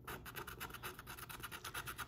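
Plastic scratcher tool scraping the coating off a scratch-off lottery ticket in quick back-and-forth strokes, about ten a second, faint.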